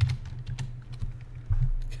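Computer keyboard keystrokes: a few separate key presses, with a heavier dull thump near the end.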